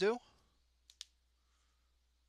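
The tail of a spoken word, then two short clicks close together about a second in, the second louder.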